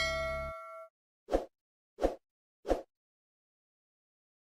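A notification-bell chime sound effect rings out and fades within the first second as the backing music cuts off, followed by three short pops about two-thirds of a second apart.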